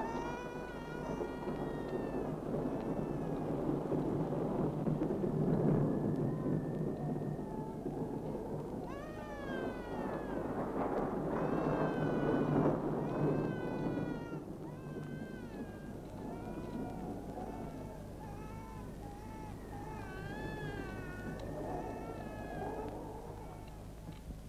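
Film soundtrack: a high, wordless wavering melody in long sliding phrases over a low rumbling noise. The rumble is strongest in the first half and eases off after about 14 seconds.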